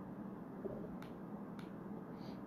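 A steady low hum of room noise with two faint sharp clicks, about a second in and half a second apart.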